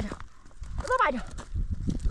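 A person crying out in distress: two falling, wailing cries about a second apart, heard as "no". Low thumps and scuffling follow near the end.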